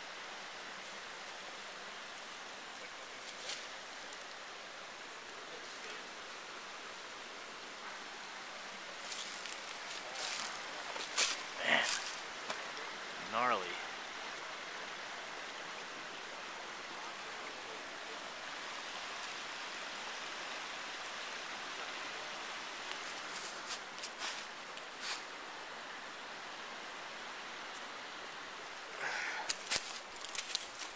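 Steady rush of a small forest stream flowing. A few sharp clicks come about a third of the way in and again near the end, and a short wavering vocal sound comes about halfway through.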